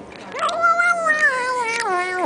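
Eight-week-old kitten giving one long squeal while eating treats: it starts about half a second in, jumps up in pitch, then slides slowly down.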